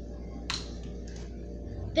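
A wall light switch flipped on: one short, sharp click about half a second in, over a faint steady room hum.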